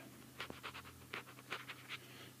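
Stylus writing on a tablet screen: a faint run of short scratches and taps, several a second, over a steady low electrical hum.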